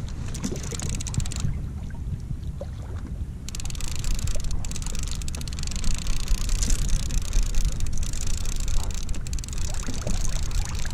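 Wind rumbling on the microphone with water splashing and lapping against a moving kayak's hull; the water hiss grows louder about three and a half seconds in.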